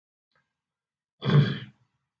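A man's voice: after a pause, one brief voiced sound about a second and a quarter in, lasting about half a second.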